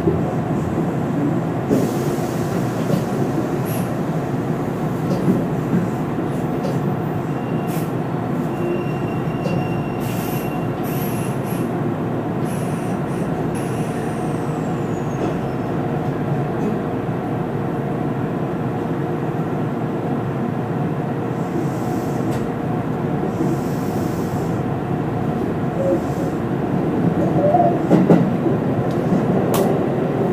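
Hanshin electric train running, heard from inside the driver's cab: a steady rumble of wheels and motors. Near the end it grows louder with clatter as the wheels run over points.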